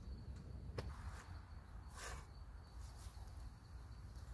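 Quiet outdoor ambience: a faint, steady, high insect tone over a low rumble, with a sharp click just under a second in and a brief soft rustle about two seconds in.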